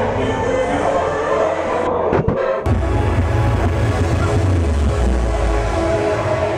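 Loud electronic dance music playing over a club sound system, with a heavy bass beat. The music breaks off briefly about two seconds in, then the bass comes back in.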